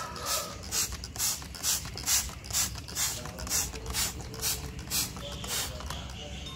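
Plastic hand trigger spray bottle pumped over and over, about two squeezes a second, each a short hiss of mist onto fig leaves and stems. The squeezes fade out near the end.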